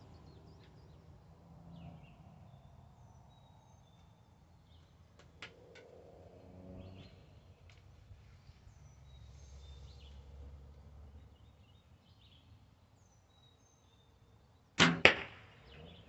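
A 1986 Bear Whitetail 2 compound bow being shot near the end: one sudden, sharp release of the string after several seconds of quiet drawing and aiming. Faint bird chirps can be heard in the quiet before it.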